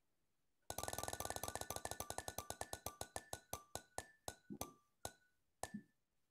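Sound effect of an on-screen spinning wheel game: short pitched ticks, about a dozen a second at first, slowing steadily to one every half second or so as the wheel comes to rest.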